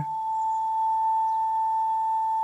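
A single long flute note from the background score, held steady at one pitch.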